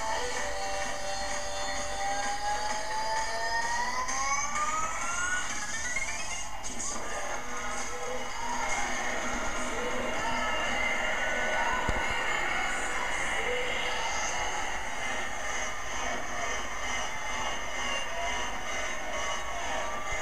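Music from a television broadcast of a fireworks show, heard through the TV's speaker, with a rising pitch sweep over the first few seconds.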